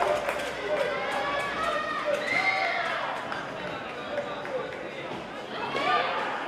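Several voices shouting and calling out in a large sports hall, with a few short, sharp taps among them.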